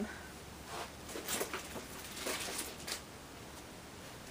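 Rummaging by hand among stored things: a few soft rustles and light knocks, scattered across the few seconds, as objects are moved about in a search.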